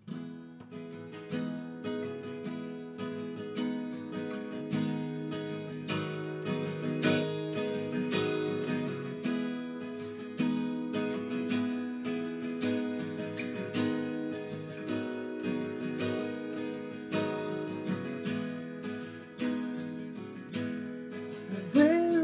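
Solo acoustic guitar playing an instrumental introduction: strummed chords in a steady rhythm, with no voice yet.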